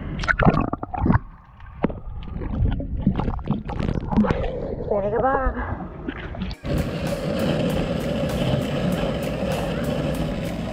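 Water sloshing and splashing against a boat hull at the waterline, with a brief voice sound about five seconds in. At about six and a half seconds it cuts to longboard wheels rolling on asphalt: a steady rumble with evenly spaced clicks as the wheels cross cracks in the pavement.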